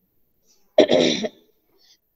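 A woman clearing her throat once, briefly, about a second in.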